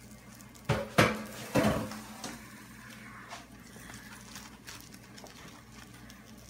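Cookware clatter: a frying pan and metal tongs knocking three times in quick succession as the pan is handled and set aside, followed by a faint steady hum.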